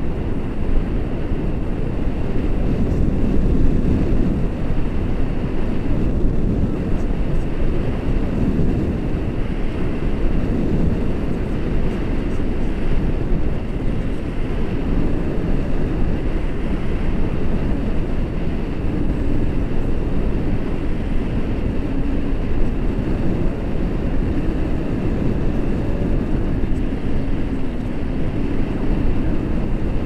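Steady wind noise from the airflow of a paraglider in flight buffeting the action camera's microphone: a low rumble that swells and eases in gusts.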